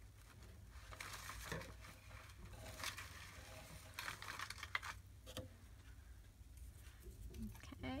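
Faint rustling and shuffling of paper scraps being handled and sorted by hand, with scattered light clicks and taps.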